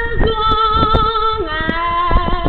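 A woman singing long held notes with vibrato, the pitch stepping down to a lower note about one and a half seconds in.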